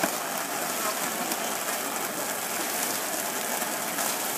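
Steady hiss of water spraying from a hose and splashing onto wet pavement.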